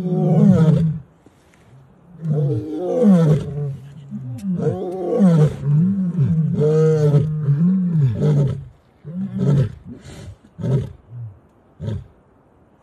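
Lion roaring: several long, loud roars that rise and fall in pitch, then a series of shorter grunting calls that trail off near the end.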